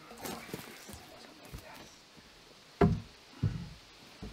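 A peeled log being set onto a log-cabin wall: some scraping and shuffling, then two heavy, dull wooden thuds about half a second apart near the end as it lands on the logs below.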